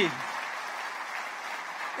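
Audience applauding steadily, the dense clapping of many hands.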